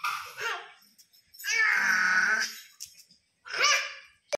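A toddler's voice babbling: three separate vocal sounds, a short one at the start, a longer held one in the middle and a short one near the end.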